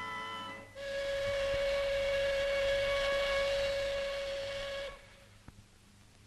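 Steam locomotive whistle giving one long, steady blast of about four seconds with a hiss of steam. It starts about a second in and cuts off abruptly, and it is the train's departure signal. Just before it, a held musical chord ends.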